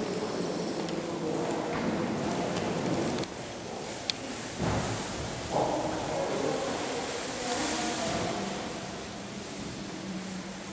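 Reverberant ambience of a large church interior, a low murmur of distant sound, broken by a sharp click about four seconds in and a dull thump just after.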